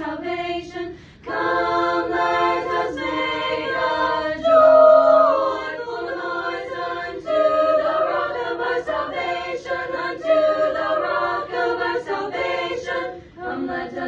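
Small choir singing a cappella, holding chords that move from note to note together. The singing dips briefly about a second in and again near the end, where the singers breathe between phrases.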